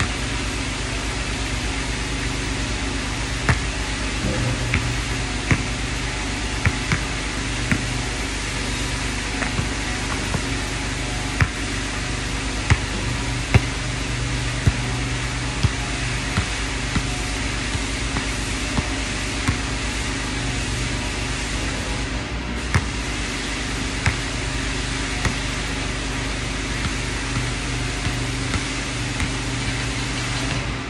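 A basketball bouncing on a hard outdoor court, sharp knocks roughly once a second, over a steady mechanical hum.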